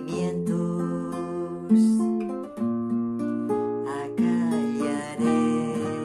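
Classical guitar with a capo playing a bolero accompaniment without voice: chords struck and left to ring, a new chord about every second or so.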